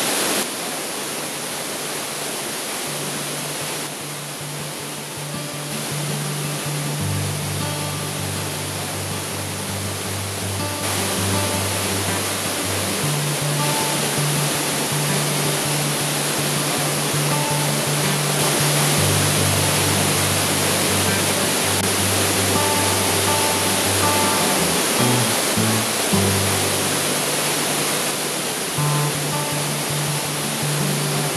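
Steady rushing of a mountain river over rocks, mixed with background music carried by low bass notes that come in about a second in.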